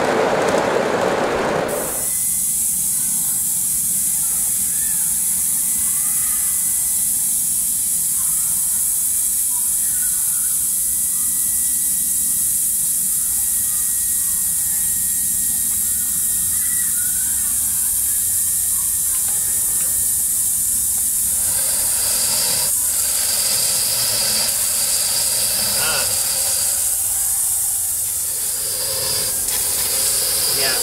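A garden-scale model freight train rolling past on the track for the first couple of seconds, then a steady high hiss of steam from a standing live-steam model locomotive, an Aster Union Pacific FEF 4-8-4. A thin steady tone sits over the hiss and fades out about two-thirds of the way through, and a few clicks come near the end.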